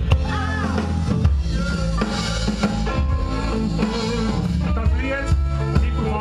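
A live band playing, with drum kit and bass steady underneath and a pitched lead line from voice or electric guitar over it.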